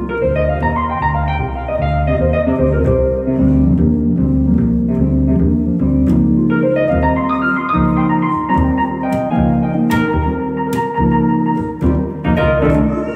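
Live instrumental jazz duo: a plucked upright double bass line, about two notes a second, under a stage keyboard playing piano-toned chords and melody.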